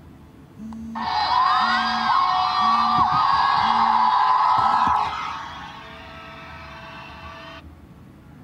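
Mobile phone ringing with a musical ringtone while vibrating in a car's centre-console cup holder, the vibration buzzing four times about once a second. The ringtone drops sharply about five seconds in and carries on quieter before stopping near the end.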